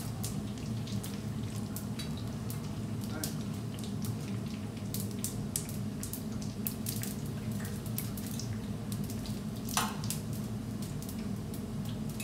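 Calzoni deep-frying in hot oil: continuous irregular crackling and popping of the bubbling oil over a steady low hum, with one louder sharp crack about two seconds before the end.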